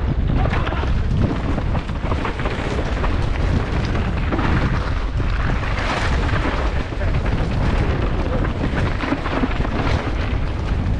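Wind buffeting a helmet-mounted camera's microphone at speed, with tyres crunching and a downhill mountain bike clattering and rattling over a rocky, gravelly trail in a steady stream of small knocks.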